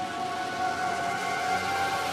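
Electronic dance music from a dubstep / hybrid trap mix: held synth tones over a noisy wash, with no beat.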